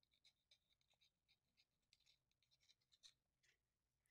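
Very faint scratching of an ink pen nib on sketchbook paper as a word is lettered: a run of short strokes, one a little stronger about three seconds in.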